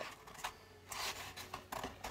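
Faint handling noise from hands moving things on a desk: a soft rubbing about halfway through, then a few light taps near the end.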